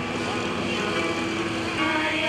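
Children's choir singing through microphones: a held note with weaker voices over steady background noise, and a new sung phrase beginning near the end.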